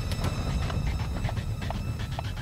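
Low, steady rumble of an emergency vehicle driving, heard from inside the cab, with a run of light, irregular clicks and knocks over it.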